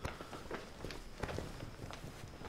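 Soft footsteps on a hard floor, a few uneven steps with light knocks and cloth rustle.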